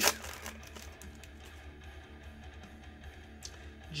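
A foil trading-card pack wrapper crinkles and tears sharply at the very start. After that only faint background music with guitar remains.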